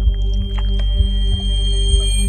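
Dramatic suspense music: a deep steady drone with low pulses about twice a second, and a thin high held tone above it, with a second higher tone joining about a second in.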